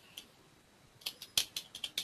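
Computer keyboard keystrokes: a faint click just after the start, then about six quick, sharp key clicks in the last second.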